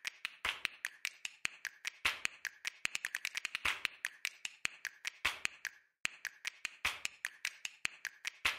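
A rapid run of sharp percussive clicks and taps, several a second, broken by a brief pause about six seconds in.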